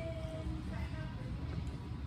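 Steady low rumble of a large hall, with faint distant voices talking.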